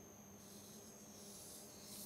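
Felt-tip marker drawing a circle on paper: a faint, high hiss starting about half a second in and lasting about a second and a half.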